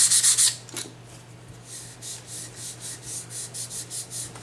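Sandpaper rubbed fast back and forth over an oil-wet wooden shotgun stock, wet-sanding the Tru-Oil finish into a slurry to fill the grain. It stops about half a second in and gives way to softer, fainter rubbing strokes as a cloth patch wipes the slurry off.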